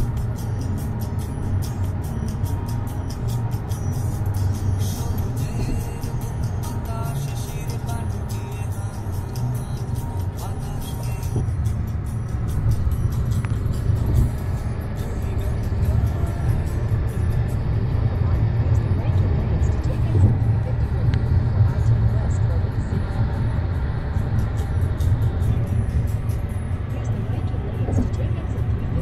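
Steady low rumble of road and engine noise inside a car's cabin at highway speed, a little louder in the second half.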